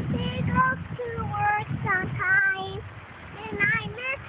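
A young girl singing a made-up tune in a high voice, in held notes that slide up and down, with a short break about three seconds in.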